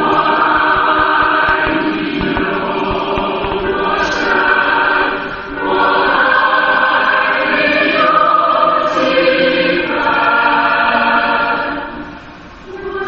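Choir singing with musical accompaniment in long, held phrases, with a short break about five and a half seconds in.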